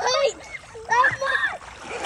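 Pool water splashing as a toddler swims, with people's voices over it, loudest at the start and about a second in.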